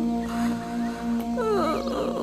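A woman's pained moan in labor, gliding in pitch, about one and a half seconds in, over a steady sustained music drone.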